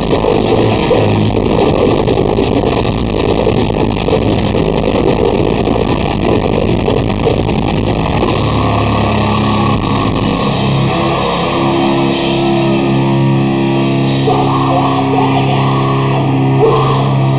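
Heavy metal band playing live: electric guitars and drums in dense, fast playing, giving way about halfway to long held low chords.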